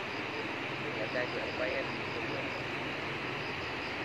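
Muddy floodwater rushing steadily across the valley, with faint distant voices about a second in.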